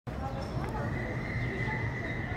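City street background noise with a high, steady whistle-like tone that comes in just under a second in and is held unbroken for over a second.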